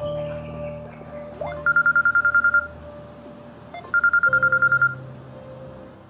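Mobile phone ringing twice with a fast trilling electronic ring, each ring about a second long, over a steady background music drone.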